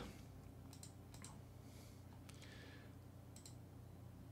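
Near silence with a handful of faint computer mouse clicks, several coming in quick pairs.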